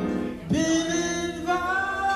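Live blues band: a male singer holds a long sung note, starting about half a second in, over keyboard and electric guitar accompaniment.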